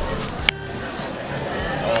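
A spoon breaks through the crisp puff-pastry crust of a chicken pot pie, giving one sharp crack about half a second in. Behind it is the steady murmur of a busy indoor market.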